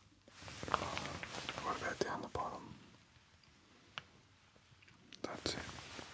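Close, breathy whispering from a man, in two stretches with a pause between, with a few sharp clicks scattered through it and one lone click in the pause.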